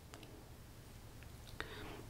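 Faint lip and mouth sounds: three soft smacks as lips are pressed together and parted to work in freshly applied lipstick.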